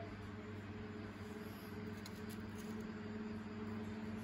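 A steady low mechanical hum, with a few faint light clicks about halfway through.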